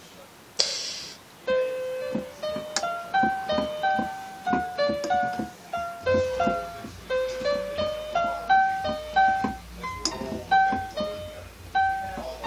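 Electronic keyboard with a piano sound playing a simple melody one note at a time, a few notes a second, beginning about a second and a half in. A short hiss comes just before the first note.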